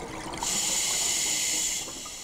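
Scuba regulator hissing as a diver draws a breath: one steady high hiss of about a second and a half that tails off near the end.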